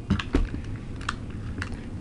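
Light plastic clicks and knocks as Beyblade tops and launchers are handled on a table, a quick cluster just after the start, then a few single clicks.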